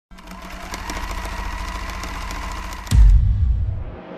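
Intro sound effects: a fast, even mechanical rattle over a steady hum for about three seconds, cut off by a deep booming hit that dies away toward the end.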